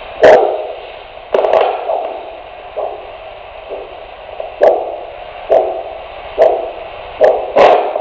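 Handheld Doppler ultrasound probe held at the ankle, giving out the whooshing beat of the arterial pulse about once a second. It is the pulse in the foot before the tourniquet is applied, the signal that the tourniquet is meant to stop.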